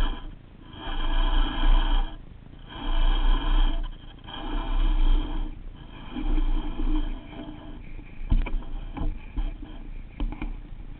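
Baitcasting reel being cranked in about five bursts of a second or so with short pauses between, its gears whirring as the lure is retrieved; a couple of sharp clicks near the end.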